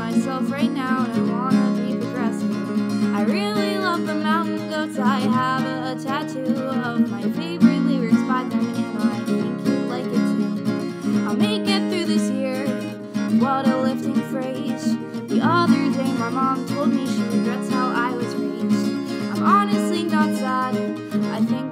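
Folk punk song: a strummed acoustic guitar with a woman singing over it.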